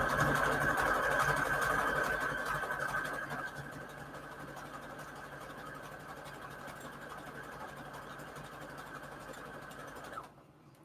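Brother electric sewing machine running steadily as it stitches a decorative border through a fabric-covered paper index card. It is louder for the first three seconds, then quieter and even, and stops right at the end.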